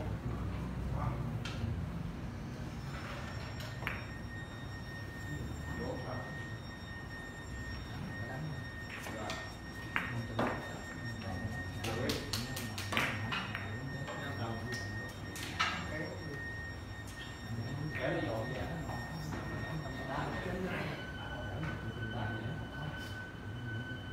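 Carom billiard balls clicking: scattered sharp clicks of cue and ball strikes, with a quick run of several clicks in the middle and single louder clicks a couple of seconds before and after it.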